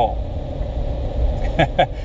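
A steady low rumble in the background. Near the end a man gives a brief chuckle, two short laughs.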